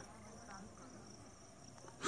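Near silence, with a faint steady high-pitched insect trill.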